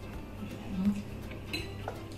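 Metal forks clinking lightly on ceramic plates during a meal, a few small scattered clicks. A brief voiced hum comes about a second in, and a short voiced sound near the end.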